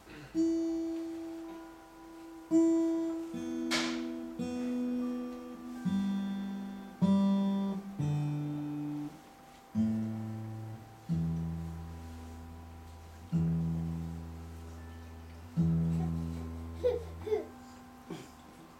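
A plucked string instrument playing a slow lullaby melody one note at a time, each note ringing out and fading; deeper bass notes come in during the second half. A sharp click about four seconds in.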